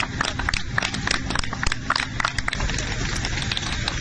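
Noise from an airliner parked on an airport apron, a steady loud rush of jet engine or auxiliary-power-unit noise, broken by many short sharp clicks and a few faint voices.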